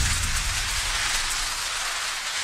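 Transition sound effect under a title card: a low boom at the start, then a steady rushing hiss that slowly fades.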